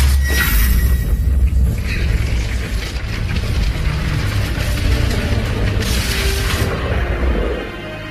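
Film score music over a deep, heavy rumble, with a sudden crash right at the start and a burst of hiss about six seconds in; the rumble drops away near the end.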